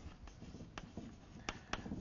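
Chalk writing on a blackboard: faint scratching broken by a few sharp taps as the chalk strikes the board.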